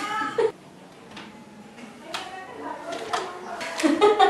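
A toddler's high, whiny voice fussing in short cries at the start and again about halfway through. Near the end come a few light clicks from his hands pressing the buttons of the electronic baby scale.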